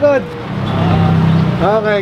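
Motorcycle engine idling steadily nearby, a continuous low hum that is plainest in the middle, between brief words at the start and near the end.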